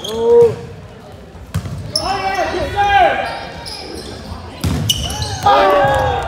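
Indoor volleyball play on a gym floor: sneakers squeaking in short curved squeals as players move, and a couple of sharp hits of the ball, about a second and a half in and again near the end, ringing in the large hall.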